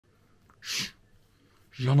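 A small white dog sneezes once, a short hissy burst about two-thirds of a second in, with its nose close to the microphone. A man starts speaking near the end.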